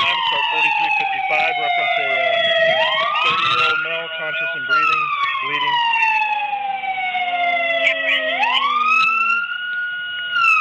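Police siren on the wail setting: it rises quickly, holds briefly, then falls slowly over several seconds, repeating about every five and a half seconds, with two rises, one early and one near the end.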